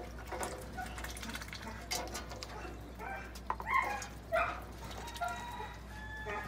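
Ducks feeding from a food bowl and water dish: scattered sharp clicks of bills against the dishes, with a few short calls about three and a half to four and a half seconds in.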